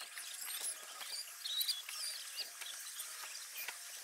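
Small birds chirping and twittering in many quick, high, short notes, over a scatter of soft clicks.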